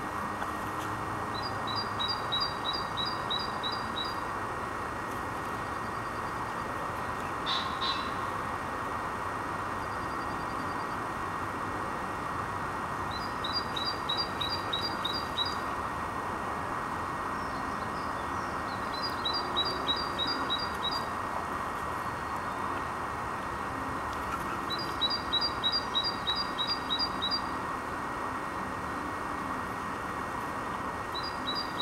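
A songbird singing a short phrase of quick, evenly spaced high notes four times, with long pauses between, over steady background noise. A single sharp click about eight seconds in.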